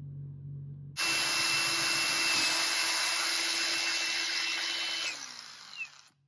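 Cordless drill boring into a softwood beam: it starts suddenly about a second in and runs at a steady speed with a whine and cutting noise for about four seconds, then the motor is released and winds down.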